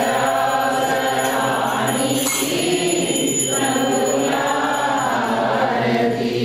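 A group of voices singing a devotional song together with musical accompaniment, steady and loud.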